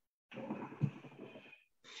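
A man's audible breath, lasting about a second, heard through a video-call microphone.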